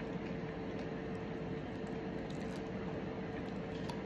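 A person quietly chewing a mouthful of cheeseburger, with faint wet mouth clicks, over a steady background hum.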